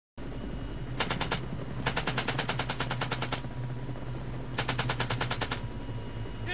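M60 machine gun fired from a helicopter door in three bursts of about ten shots a second: a short one about a second in, a longer one from about two seconds to three and a half, and another from about four and a half to five and a half seconds. The helicopter's engine and rotor drone steadily underneath.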